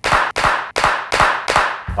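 Three people clapping hands together in a steady rhythm, about six claps spread evenly at roughly three a second.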